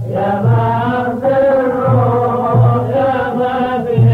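Middle Eastern song: a sung melodic line in phrases of about a second each, over low drum beats in an uneven rhythm.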